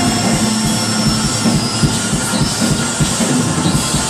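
A live rock band playing loud: fast drumming with electric guitar and keyboards, without singing. It is picked up loud and coarse by a small camcorder's built-in microphone in the crowd.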